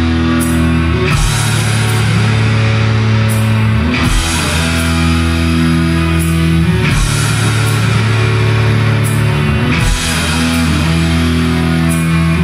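Live rock band playing an instrumental passage: guitar chords ringing over bass and drums, shifting to a new chord about every three seconds, with no singing.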